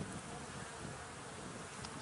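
Honey bees buzzing in an open hive box: a steady, even hum of many bees.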